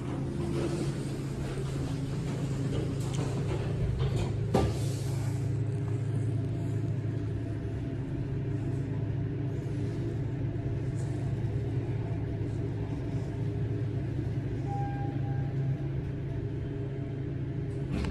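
A KONE traction elevator car's steady low hum and rumble as it rides up. A few clicks and a sharp knock about four and a half seconds in come as the car doors shut.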